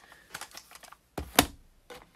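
Plastic cassette cases being handled and put down: a string of light clicks and clatters, with one sharp knock, the loudest, about one and a half seconds in.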